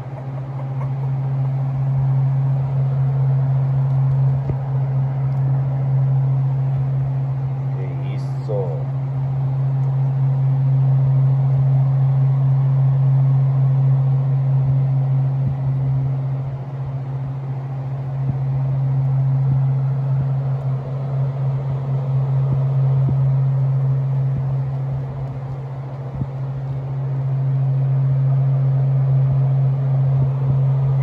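A steady low hum that swells and fades slowly, with a brief high squeal about eight seconds in.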